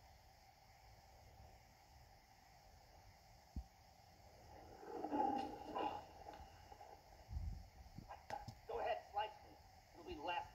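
Cartoon soundtrack heard from a TV speaker: faint hiss, then about halfway through a cartoon character gives wordless vocal cries, with a low thump and several more short cries near the end.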